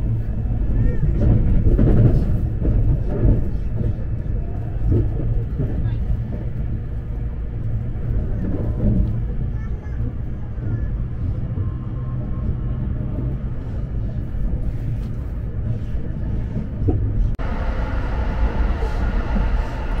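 Cabin noise of a JR East E257 series electric train running at speed: a steady low rumble from the wheels and track. Near the end the noise turns suddenly brighter and hissier.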